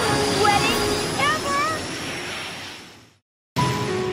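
A cartoon flight whoosh as Rainbow Dash speeds through the air: a steady rushing noise with a faint rising whistle and a few short squeaky chirps, fading away about three seconds in. After a brief silence, music starts just before the end.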